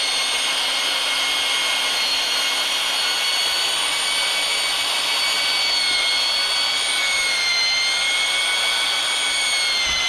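Half-inch drill with a paddle mixer running steadily, churning thick drywall joint compound that is being thinned with water in a five-gallon pail. Its high whine dips briefly in pitch twice, a little past seven seconds in and again near the end.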